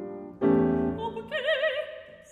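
A grand piano strikes a chord about half a second in. About a second in, a soprano voice enters over it on a held operatic note with a wide vibrato.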